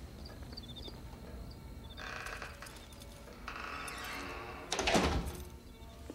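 A wooden front door being moved and then pushed shut with one solid thud about five seconds in, the loudest sound here. Crickets chirp faintly in the first second or so.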